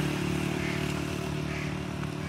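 Motorcycle engine running steadily at low revs.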